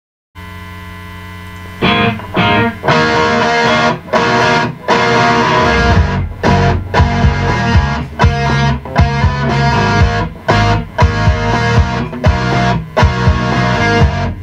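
Distorted electric guitar from a single-cut, Les Paul-style guitar. A quieter held tone comes first; about two seconds in it breaks into a riff of loud chords, chopped by short gaps in a stop-start rhythm.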